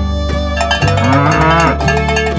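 A single cow moo, a recorded sound effect, starting about a second in and lasting under a second, over background music.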